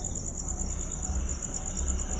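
Crickets chirping: a steady, high, rapidly pulsing trill over a low rumble.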